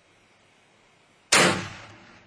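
A single gunshot fired at a deer: one sharp, very loud crack a little past halfway through that dies away over about half a second.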